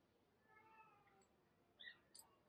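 Near silence with one faint, short animal call about half a second in, its pitch falling slightly. A brief high chirp follows near the end.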